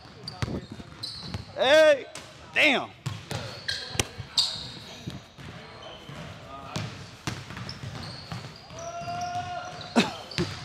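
Basketballs bouncing on a hardwood gym floor in sharp, repeated knocks, with two loud squeals about two seconds in that fit sneakers squeaking on the court.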